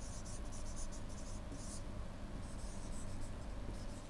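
Faint, irregular scratching of a stylus on a writing tablet as a word is handwritten in short strokes, over a low steady hum.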